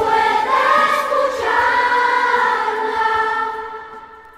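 Choir singing long held notes in several parts, fading away near the end as the song closes.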